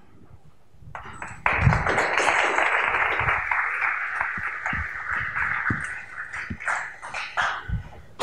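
Audience applauding in a lecture hall, starting suddenly about a second and a half in and slowly dying away, with a few low thumps.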